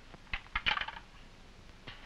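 A desk telephone's handset being handled and hung up: three light clicks, the loudest about two-thirds of a second in, the last near the end.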